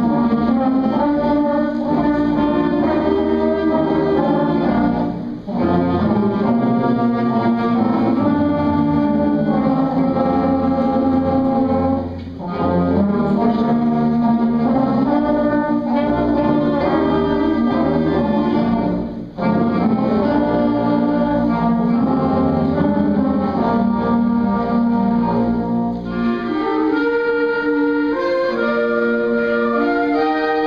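Student concert band of brass, saxophones and woodwinds playing the slow, chorale-like opening of a piece. Long held chords come in phrases, with brief breaks between them for breath. A higher moving melody enters near the end.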